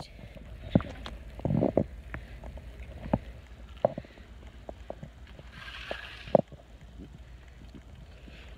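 Wind rumbling on a handheld phone microphone, with scattered handling knocks and clicks and a short hiss about six seconds in.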